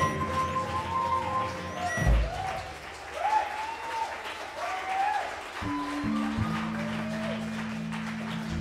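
Audience applause and cheering with rising-and-falling whistles as a live jazz number ends, with a single low thump about two seconds in. A low held instrument note comes in near the end.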